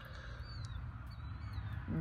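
Quiet outdoor background: a few faint, high, brief bird chirps over a low steady rumble.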